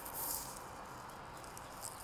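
Faint, steady background noise with a high hiss and a light tap near the end.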